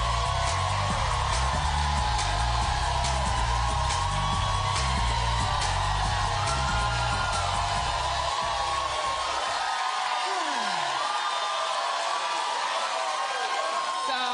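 Upbeat theme music with a heavy bass beat under a studio audience cheering and whooping. The bass drops out about eight seconds in, leaving the cheering and the higher part of the music.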